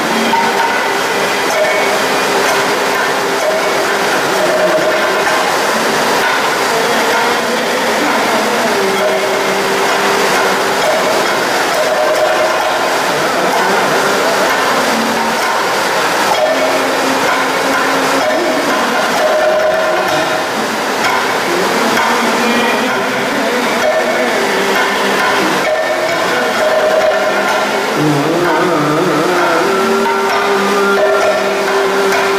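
Kathakali music: a singer chanting in long held, gliding notes over dense drumming on chenda and maddalam.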